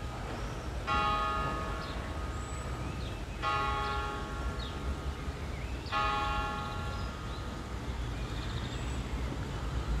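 A bell tolling slowly: three strikes about two and a half seconds apart in the first half, each ringing on until the next.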